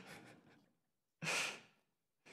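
A man's single short breathy exhale, close to the microphone, about a second in, after his speech trails off.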